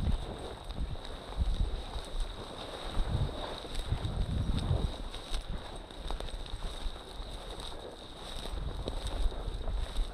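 Wind buffeting the microphone in uneven low gusts, with dry prairie grass brushing and rustling against someone walking through it.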